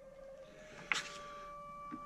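A book page being turned once, a short papery rustle about a second in, over a faint steady electronic whine with a couple of held tones.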